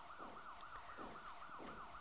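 Faint siren with a fast warble, rapid repeating sweeps in pitch, running on as a background bed under the programme.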